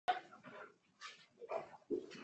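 Faint, broken snatches of people's voices talking, in short bursts about half a second apart, with a sharp click at the very start.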